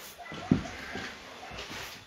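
A single dull thump about half a second in, followed by low shuffling noise of movement.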